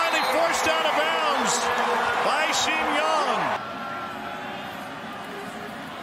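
Stadium crowd cheering loudly at a touchdown, with shouting voices over it. The cheer cuts off abruptly about three and a half seconds in, leaving a quieter crowd murmur.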